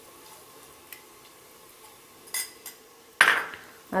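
A steel spoon clinking lightly against a pressure cooker as fennel seeds are spooned into hot ghee, with a louder burst of noise near the end.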